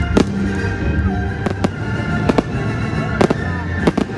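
A fireworks display: about eight sharp bangs of bursting shells, several in quick pairs, over steady music.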